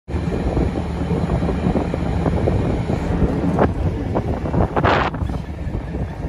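Wind buffeting the microphone on the open deck of a ferry under way, over a steady low rumble from the ship. Louder gusts hit about three and a half seconds in and again around five seconds.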